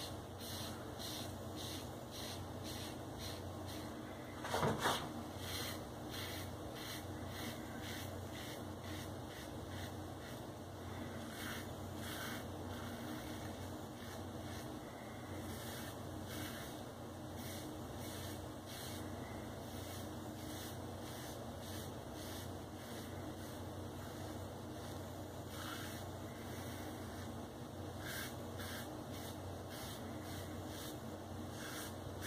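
Open-comb safety razor with a Feather blade scraping lathered stubble off the scalp on an across-the-grain pass, in short strokes a few times a second over a steady low hum. The blade is on its second shave and glides without tugging. One brief louder noise comes about five seconds in.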